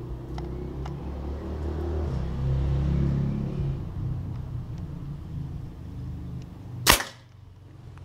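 A single air rifle shot, one sharp crack about seven seconds in, firing a pellet at a match 10 m away. Before it, a low rumbling noise runs through the first few seconds.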